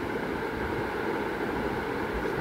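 Steady background noise, a low rumble and hiss with no distinct events.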